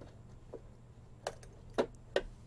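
A few small clicks, a faint one about half a second in and two sharper ones in the second half, as the lever of the component tester's ZIF test socket is worked and the capacitor is pulled out.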